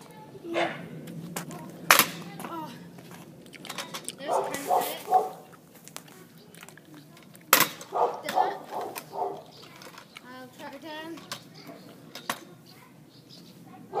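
Two sharp clacks of a stunt scooter's deck and wheels slapping down on tarmac as bar whips are attempted, one about two seconds in and a louder one past seven seconds, with a boy's voice talking in between.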